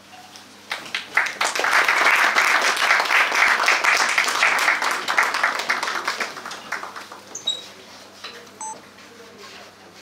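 Audience applauding, swelling about a second in and dying away over the next several seconds.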